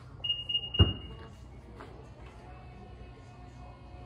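Power tailgate of a Nissan Qashqai opening: a high electronic warning beep, a clunk as the latch releases, then the tailgate motor's steady whirr as the hatch lifts.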